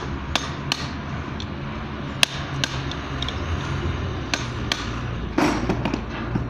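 Sharp metal clinks and knocks at irregular intervals, about ten in all, the sharpest about two seconds in, from steel gears and a rod being worked on a GB40 gearbox main shaft during assembly.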